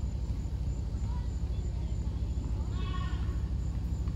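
Outdoor ambience: a steady low rumble with a faint high insect buzz, and one brief distant call, voice-like, about three seconds in.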